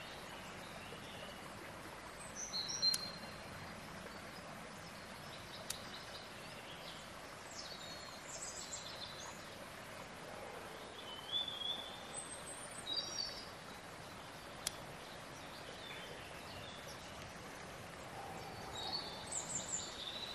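Quiet outdoor ambience: a steady soft hiss with wild birds giving short, scattered high chirps and calls every few seconds, and a few faint sharp ticks.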